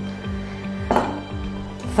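Background music with a steady low bass line, and a single clink of kitchenware against the cooking pot about a second in.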